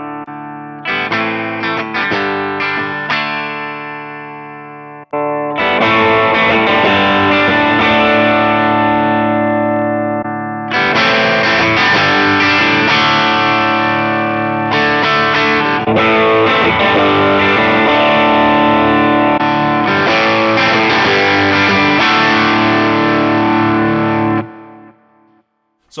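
Electric guitar through a Fractal Audio FM9's Blues Jr. amp model. A few picked notes ring out and decay for about five seconds. After a brief break comes about twenty seconds of sustained, distorted overdrive playing, which gets louder about halfway through and stops shortly before speech resumes.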